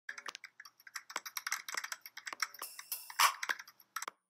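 Typing sound effect: a quick, irregular run of key clicks, with a louder clack about three seconds in.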